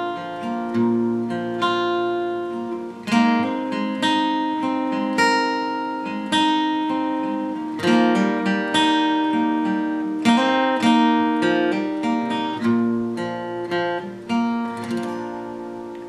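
Steel-string acoustic guitar, capoed at the third fret, fingerpicked slowly: picked chord patterns with bass notes and hammer-ons on the inner strings, each note ringing into the next.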